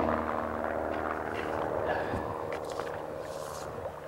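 Steady hiss and low hum of old outdoor film sound, with a few faint scrapes about two and a half and three and a half seconds in, as slush is cleared from a hole in the ice.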